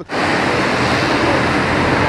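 Loud, steady rushing noise of outdoor street ambience.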